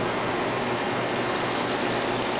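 Hot rendered beef fat pouring from a frying pan into a plastic colander, running as a steady stream into the metal pan below.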